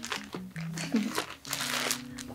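Clear plastic packaging bag crinkling as it is handled, over steady background music.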